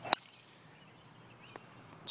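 Golf driver striking a teed-up ball: a single sharp, loud click with a brief high ringing tail, just after the start.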